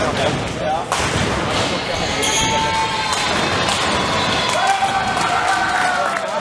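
Ninepin bowling balls thudding onto the lanes and rolling, with pins clattering, amid loud hall noise and shouts from players and spectators.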